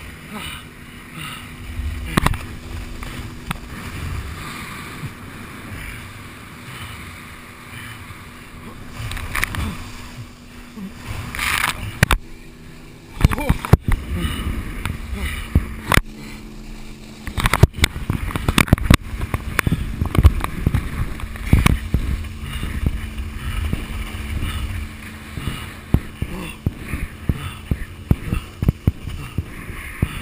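Wind and water rushing past a tow-handle action camera as a water skier is pulled behind a boat. From about twelve seconds in, a long run of sharp knocks and splashes breaks in.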